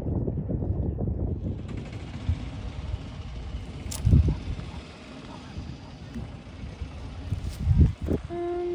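Wind buffeting the phone's microphone at first, then the phone being jostled, with a heavy low thump about four seconds in and another near the end.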